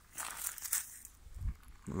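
Footsteps crunching on gravel ballast and dry twigs, a few irregular crunches with a duller thump about a second and a half in.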